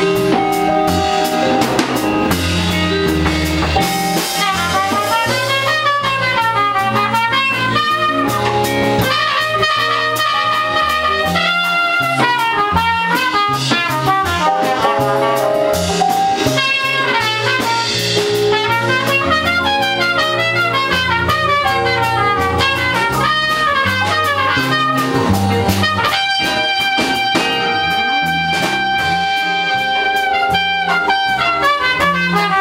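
Live band playing an instrumental break with no singing: a trumpet plays lead over drum kit, bass, keyboard and electric guitar, moving in quick up-and-down runs and then longer held notes near the end.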